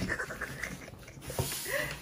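A woman laughing breathily under her breath, with a light tap about halfway through.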